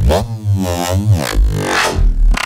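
Reese bass patch from FL Studio's Sytrus FM synth, played back through its flanger and band-pass EQ with the wave shaper switched off: a loud, heavy electronic bass whose overtones sweep down and back up in pitch over about a second.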